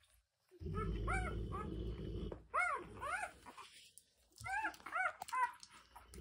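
Newborn puppies squeaking and whimpering while nursing: about seven short, high cries that each rise and fall in pitch, in three small groups. A low rumbling noise runs under the first couple of seconds.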